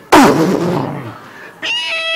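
A man's voice making sound effects: a sudden loud explosion-like blast that falls in pitch and fades over about a second, then, about a second and a half in, a high, steady squeal held for about a second.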